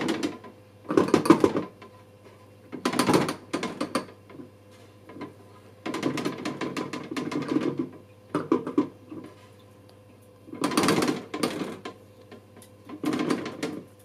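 Plastic Lomo developing tank's agitator knob being turned by hand, rotating the 16mm film spiral in the developer. It gives bursts of clicking and rattling, several times with short pauses between them.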